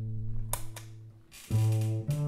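Upright double bass played pizzicato through a bass amp: a low plucked note rings and fades, and a new note is plucked about one and a half seconds in. Partway through, the signal is switched from a Gallien-Krueger Neo 112 combo to an Acoustic Image DoubleShot cabinet.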